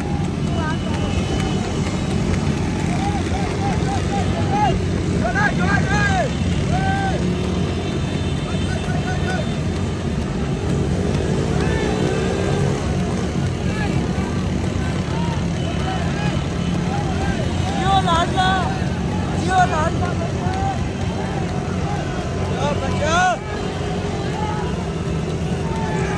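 Many motorcycle engines running together in a steady low din with wind rush, one engine revving up about halfway through. Shouts rise above it now and then, in clusters about a quarter of the way in and again near three-quarters.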